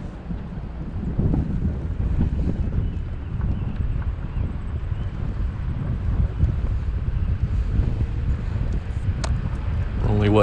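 Wind buffeting the microphone of a camera on a slowly moving vehicle, over a low rumble of tyres and engine.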